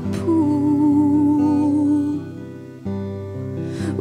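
Live solo folk performance: a woman sings one long held note over acoustic guitar chords. The note ends about halfway through, the guitar dies away, and a fresh strum comes in near three seconds.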